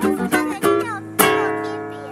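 Guitar playing a few quick plucked notes, then a closing chord struck about a second in and left ringing as it slowly fades out.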